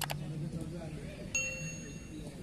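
A single sharp metallic ding about a second and a half in, ringing with a clear tone that fades over about half a second, after a couple of soft knocks near the start.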